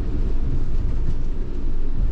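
Steady low rumble of engine and road noise inside the cab of a motorhome driving along a city street.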